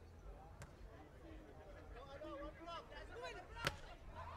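Sharp slap of a beach volleyball being struck hard by hand near the end, the loudest sound, with a fainter ball contact about half a second in. Faint players' calls and crowd voices carry over a low background rumble.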